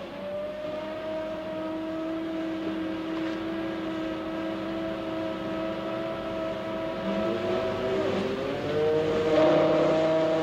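Crane winch motor whining steadily as it lowers a bathyscaphe on its cable. About eight seconds in the whine dips and a new whine rises in pitch.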